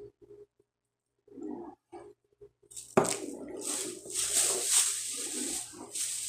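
A few light handling knocks, then, about halfway through, a sudden start of plastic shopping bag rustling and crinkling as items are dug out of the bag.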